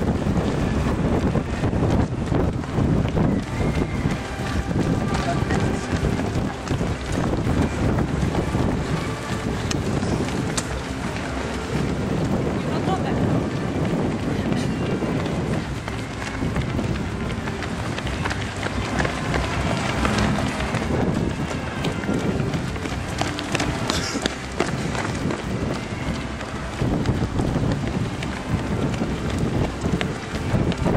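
Footsteps of a steady stream of road runners on asphalt, with indistinct voices of people around them.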